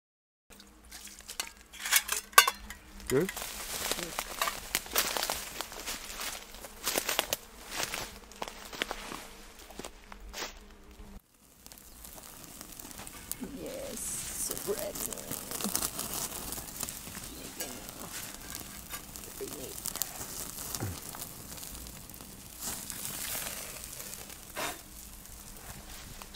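Metal camping cups and pots clinking and knocking as they are handled, then, after a cut, a campfire burning with scattered crackles.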